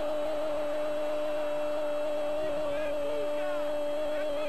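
A sports commentator's long, drawn-out "gol" cry after a goal, held as one unbroken note at a steady pitch.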